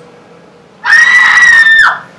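A woman's scream: one high cry held at a steady pitch for about a second, starting about a second in and falling away at the end.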